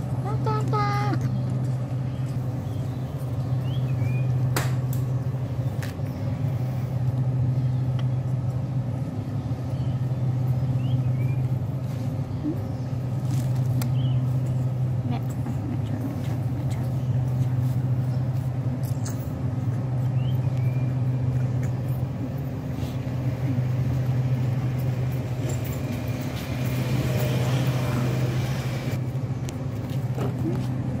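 A steady low machine hum, like a motor running, swelling and easing every three to four seconds, with a few faint short chirps.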